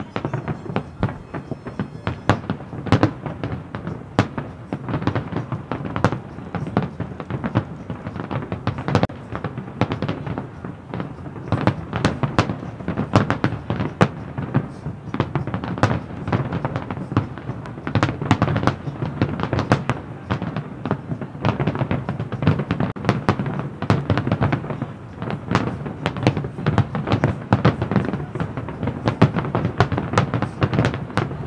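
Aerial fireworks display: shells bursting in a rapid, unbroken barrage of bangs and crackles, several a second, with no let-up.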